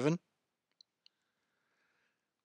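Near silence after a spoken word ends, broken by two faint short clicks about a quarter second apart.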